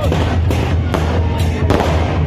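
Loud temple-festival procession music with a steady low drum, broken by sharp cracks at uneven intervals, a few each second.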